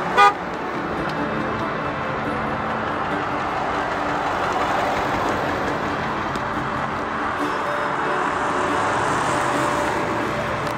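A car horn gives one short honk at the very start, then steady road and tyre noise of cars driving past on the highway, swelling a little as each passes.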